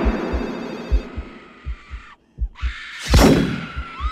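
Film title-sequence sound effects: a fast heartbeat of paired low thumps under a loud hissing rush that cuts out briefly a little past two seconds, then a sharp whooshing burst about three seconds in.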